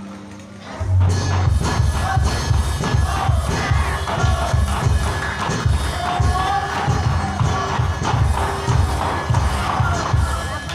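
Music with fast, heavy drumming that starts suddenly about a second in and drives on at a quick, steady rhythm, the accompaniment for a ketoprak stage fight, with crowd shouts over it.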